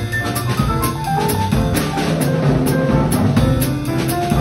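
Live jazz piano trio: grand piano, upright double bass and drum kit playing together, with steady cymbal strokes over the piano and bass lines.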